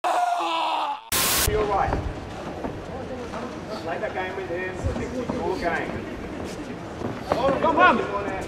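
Voices shouting around a fight ring: cornermen and a few spectators calling out, growing louder near the end. About a second in there is a short, loud burst of noise.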